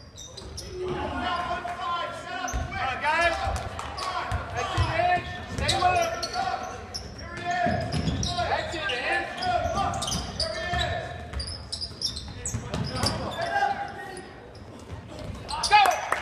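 Basketball bouncing on a hardwood gym floor during live play, repeated short thuds, mixed with indistinct shouting from players and crowd in the large hall.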